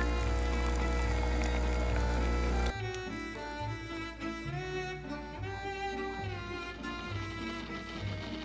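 Home espresso machine's pump humming loudly while espresso streams into the mug, cutting off suddenly under three seconds in. Background music with bowed strings plays throughout.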